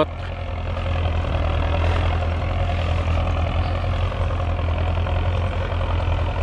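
Belarus 1025 tractor's turbocharged four-cylinder diesel running steadily under load, a low, even hum, as it pulls a tillage implement through the field.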